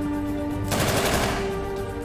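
A short burst of fire from a bipod-mounted, belt-fed machine gun, beginning a little under a second in and lasting about half a second, over background music with steady held notes.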